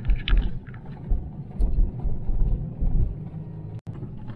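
Car interior rumble while driving over a rough desert dirt track, with uneven heavier jolts as the wheels hit bumps. The sound drops out briefly just before the end.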